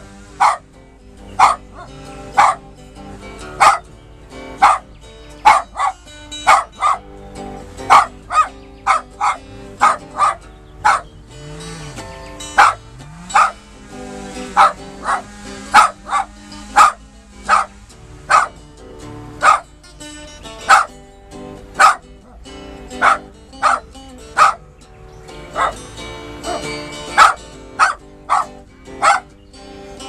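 Small dog barking repeatedly, sharp barks about once a second, over an acoustic guitar being played in a bluesy improvisation.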